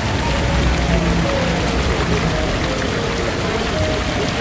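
Water pouring and splashing from a fountain, a steady rush of falling water, with soft music playing underneath.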